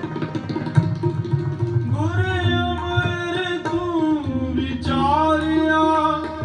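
Sikh kirtan: a male voice sings a melodic line over tabla, starting about two seconds in and rising again near the end, with held accompanying tones underneath.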